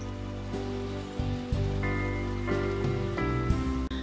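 Gentle instrumental background music: soft sustained chords that shift every second or so, over a faint steady hiss of running water.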